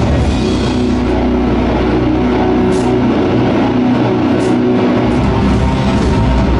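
Heavy metal band playing live: electric guitars, bass guitar and a drum kit. The lowest notes thin out briefly about three quarters of the way through.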